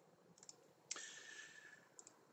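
Near silence with a faint computer click about a second in, followed by a faint hiss: the click that advances a presentation slide.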